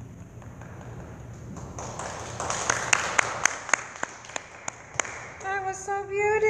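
Rustling handling noise on a headset microphone as it is fitted, with a run of about ten sharp, evenly spaced handclaps, about three a second, in the second half. A woman's voice starts just before the end.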